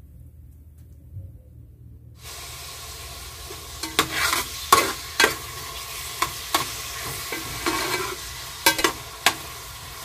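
Sliced onions sizzling in hot oil in an aluminium pot as they are fried to light brown. They are stirred with a spatula that scrapes and knocks against the pot several times. The sizzle starts suddenly about two seconds in, after a quiet hum.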